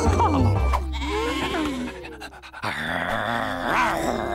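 Cartoon soundtrack music with a steady low bass. Over it, in the first two seconds or so, a flock of cartoon sheep vocalise together in overlapping, wavering voices. After a short dip, a brighter musical passage rises near the end.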